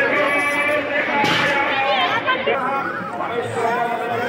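Several people talking at once, overlapping voices of a crowd, with a short rush of noise about a second in.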